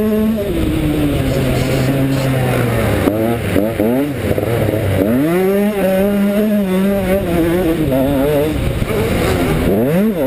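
KTM 125 SX single-cylinder two-stroke motocross engine under load, its pitch climbing and falling several times as the rider opens and shuts the throttle through the gears: a sharp rev-up and drop about three and a half seconds in, a long pull from about five and a half seconds that falls away near eight and a half, and another sharp climb at the end.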